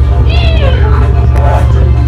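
Dramatic background music with a loud, steady bass drone, over which a high, meow-like wailing cry rises and falls about half a second in.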